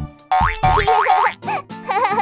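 Children's background music with cartoon sound effects: two quick upward pitch glides shortly after a brief lull, then wavering, wobbling tones.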